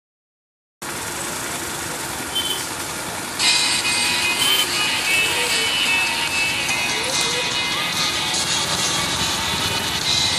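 Busy street ambience: traffic and people's voices, with music playing. It starts after a second of silence and gets louder about three and a half seconds in.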